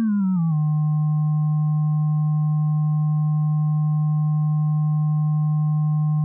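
A Pure Data FM synthesizer patch playing a steady low sine-like electronic tone. In the first half second its pitch slides down as the carrier frequency is lowered to 152 Hz, and then it holds level. Two faint higher tones sound above it: the sidebands of light frequency modulation at a harmonicity of 6.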